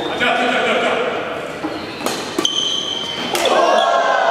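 Badminton rackets striking the shuttlecock during a doubles rally: three sharp hits in the second half. Short high squeaks from the players' shoes on the court floor come between the hits, over the voices of spectators in the hall.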